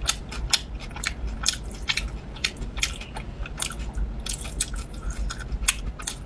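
Close-miked chewing and biting of a sausage, a dense run of short wet mouth clicks several times a second.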